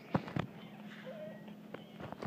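Two brief knocks from a handheld phone or camera being handled and repositioned, followed by faint room noise with a low steady hum.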